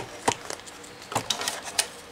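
Plastic paper trimmer being handled: about half a dozen short, sharp clicks and knocks, irregularly spaced, as paper is set up for a cut.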